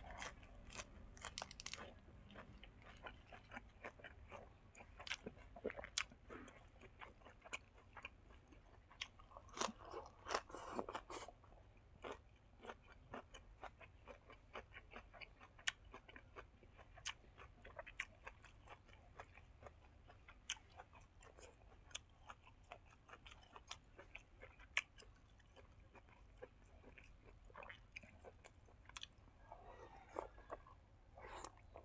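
Close-up chewing of crisp leafy greens, heard as many small irregular crunches and mouth clicks. A denser run of louder crunches comes about ten seconds in.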